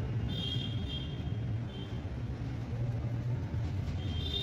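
Steady low rumble of an engine running, with a faint high whine that comes and goes.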